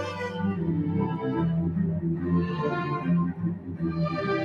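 String orchestra playing a classical piece: sustained low notes from cellos and double basses under the violins.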